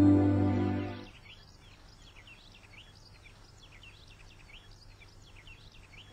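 A held music chord fades out in the first second. Then faint birdsong: many short, quick chirps over a quiet background.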